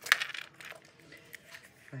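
Metal keychain clips and plastic hand-sanitizer holders clinking as one holder is picked up from a pile, a sharp clatter near the start and a few lighter clicks after it.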